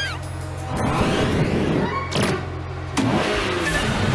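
Cartoon car sound effects of the Gekko-mobile driving off, growing louder about three seconds in, over background music.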